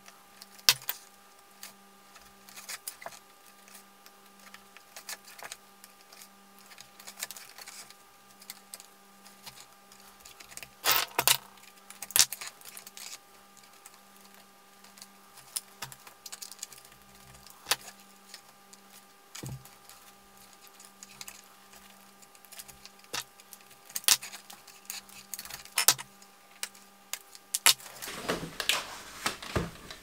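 Hand leatherwork: scattered small clicks and metallic clinks of saddle needles and small tongs, with thread drawn through the stitched leather edge, over a faint steady hum. Near the end there is a longer rustle as the leather sheath is handled.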